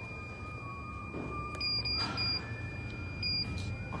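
Membrane keypad of a TC-6828 motion controller beeping short and high about three times as its arrow key is pressed, over a steady high-pitched electronic tone and a low machine hum.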